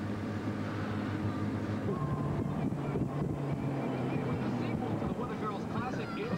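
Four-wheel-drive vehicle running, heard from inside the cabin: a steady engine and road drone, its engine note rising a little about two seconds in.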